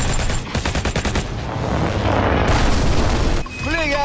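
A burst of rapid machine-gun fire from aircraft guns, about ten shots a second, lasting about a second. It gives way to a loud rushing noise, and a man shouts near the end.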